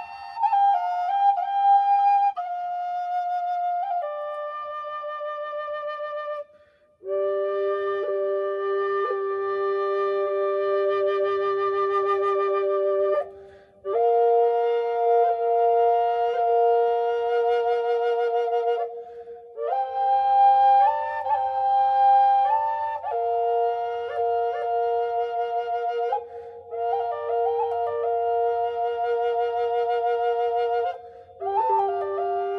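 Six-hole cedar harmony drone flute in G played in slow held phrases, two notes sounding at once from its two chambers, with a wavering vibrato on some notes and short breath pauses between phrases.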